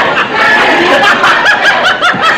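Sitcom studio audience laughing, many voices at once, loud and unbroken.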